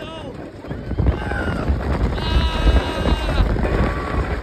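Wooden roller coaster train rumbling along the track, with wind buffeting the microphone. Riders scream, with one long high scream starting about two seconds in.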